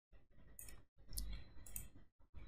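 Faint computer mouse and keyboard clicks during a copy, paste and click on a button, a few of them sharper, just after a second in and near the end.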